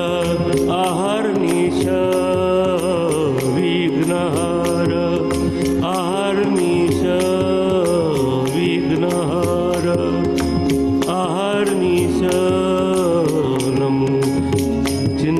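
Marathi devotional abhang sung by a male voice over a steady drone, with evenly repeated light percussion strikes keeping the beat.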